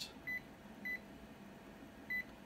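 Toshiba 4505AC copier's touchscreen control panel beeping at each key press on its on-screen keyboard: two short, high beeps a little over half a second apart.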